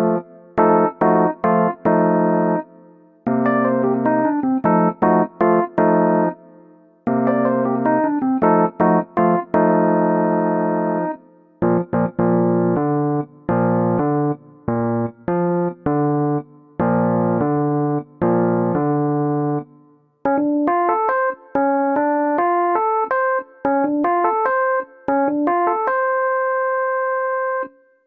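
Synthesizer workstation keyboard playing a piano sound in a cumbia chord pattern. Short stabbed chords and longer held chords over low bass notes give way, after the middle, to a quicker line of higher notes, and the passage ends on one held chord.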